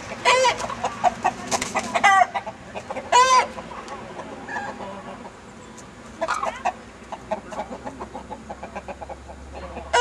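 Chickens clucking in quick short notes, broken by several loud, drawn-out calls in the first few seconds and another about six seconds in.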